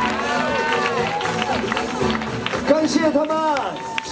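Voices calling out over music playing, with long, arching pitch on the calls.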